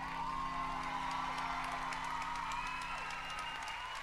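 Held closing chord of the routine's music, cutting off at the end, while audience applause and cheering come in over it.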